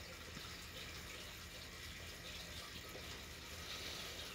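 Faint, steady background hiss with a low hum underneath.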